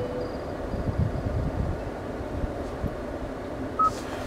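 The Bose system's built-in 'Lively Forest' nature soundscape playing in the car cabin: a low, steady rustling rumble, with a brief higher note near the end.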